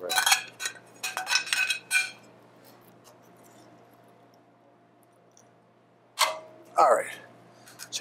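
Metal kitchen tongs clinking against pans and a plate: a quick run of sharp, ringing clinks in the first two seconds, then quiet.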